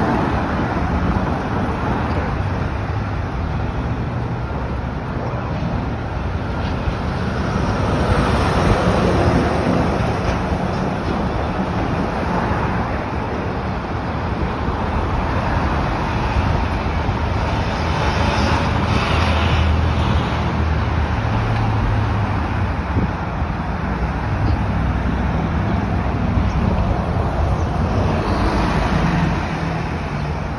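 Road traffic on a city avenue: cars and buses passing, a steady engine and tyre rumble that swells three times as vehicles go by.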